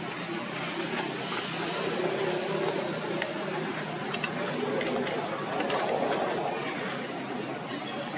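Outdoor ambience with indistinct voices murmuring in the background and a few light clicks.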